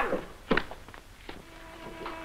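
A single sharp thunk about half a second in, then a softer knock; faint held musical notes begin near the end.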